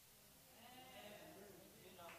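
Near silence, with a faint, distant voice rising and falling from about half a second in to near the end.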